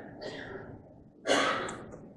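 A man draws a quick, loud breath close to the microphone about a second in, just before he starts reading aloud. Faint rustling comes just before the breath.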